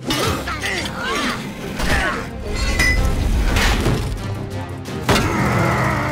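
Animated-cartoon soundtrack: background music mixed with crashing and thudding sound effects and short chirping pitch glides, with a sharp hit about five seconds in.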